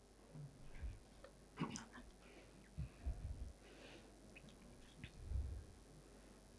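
Faint footsteps and handling noise in a quiet hall: soft low thumps with a few small clicks and rustles, the strongest thump about five seconds in.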